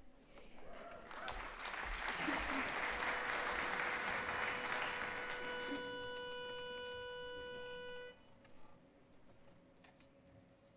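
Audience applause that swells and then fades, overlapped from about three seconds in by a single steady pitch-pipe note that stops abruptly about eight seconds in. The note gives a barbershop chorus its starting pitch before it sings.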